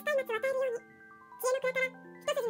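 A voice narrating in Japanese over soft music-box background music, with a brief pause in the reading near the middle.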